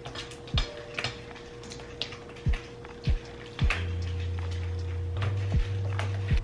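Silicone spatula knocking and scraping against a stainless steel mixing bowl while a lumpy cream cheese and strawberry mixture is stirred: about eight irregular knocks, over soft background music.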